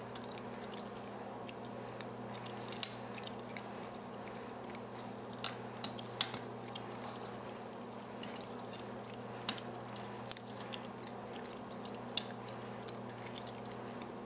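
Light, sharp metallic clicks at irregular intervals from a lock pick and tension wrench working the spool-pinned pin-tumbler cylinder of a Brinks brass padlock, as pins are set one by one, over a steady low hum.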